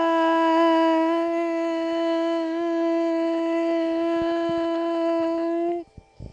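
A girl singing unaccompanied, holding the last syllable of "suicide" as one long steady note for nearly six seconds, which stops abruptly near the end.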